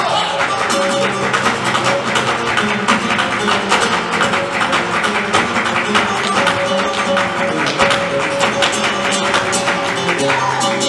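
Live flamenco: a Spanish guitar playing under dense, rapid percussive strikes from a dancer's heeled footwork (zapateado) and hand-clapping (palmas).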